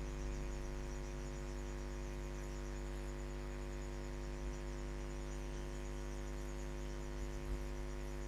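Steady electrical mains hum with a stack of its harmonics, with a faint high pulsing whine above it and two small low bumps about four and a half and seven and a half seconds in.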